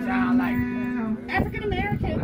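A low, drawn-out voice held on one steady pitch for about a second, then a short sudden outburst and group chatter.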